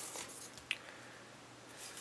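A short slide of a paper trimmer cutting a strip of cardstock at the start, then a single light click under a second in.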